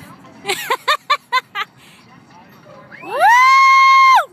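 A short burst of laughter, then about three seconds in a loud scream that rises in pitch and holds high for about a second before breaking off.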